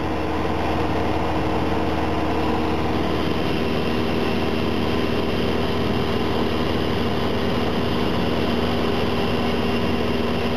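Cessna 172SP's four-cylinder Lycoming engine and propeller running steadily in flight, heard from inside the cabin as an even drone with a low hum under it.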